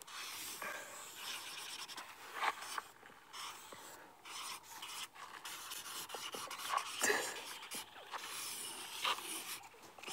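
Two marker pens rubbing and scratching across a large drawing sheet at once, in quick, irregular strokes.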